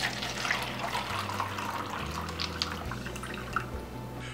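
Water poured in a steady stream from a plastic pitcher into a disposable plastic cup, splashing as the cup fills.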